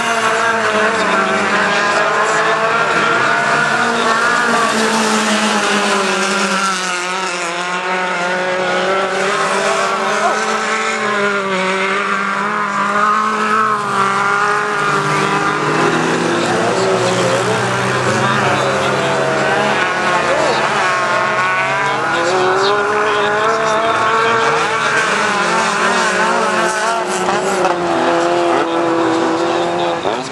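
Several small-engined touring cars of up to 1600 cc racing on a dirt autocross track, their engines revving up and down through the corners with several engine notes overlapping.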